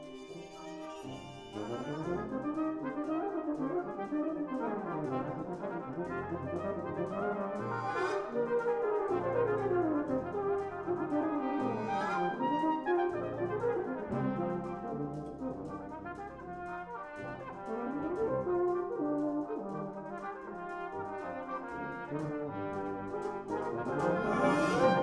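Brass band of cornets, horns, euphoniums, trombones and tubas playing, with many rising and falling runs over low sustained bass notes. It starts soft and gets louder about a second and a half in.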